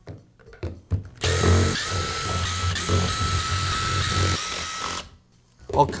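Cordless drill/driver backing screws out of a power tool's plastic housing. After a few light clicks, its motor runs for about four seconds with a steady whine, then stops suddenly.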